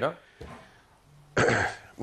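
A person clearing their throat: one short, rough burst about one and a half seconds in, after a brief pause in the talk.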